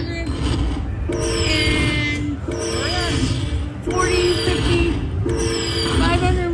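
Slot machine bonus payout tally. Each coin value added to the win meter sets off the same electronic chime jingle, opening with a falling whoosh, about every one and a half seconds, four times in all.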